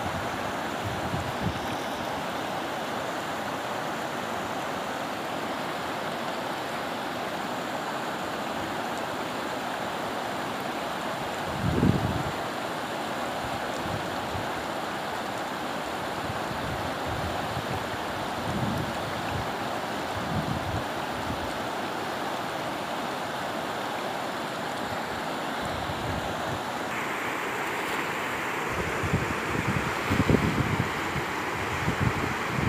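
Fast mountain river rushing over rocks in rapids, a steady loud wash of water, with a few low thumps on the microphone, the loudest about twelve seconds in.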